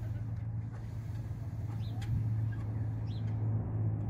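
Steady low mechanical hum, with a small bird giving short high chirps every second or so.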